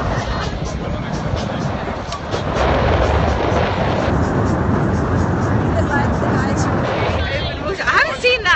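Wind buffeting the camera's microphone on a sailboat under way: a loud, steady rushing, heaviest in the low end, that grows louder about two and a half seconds in.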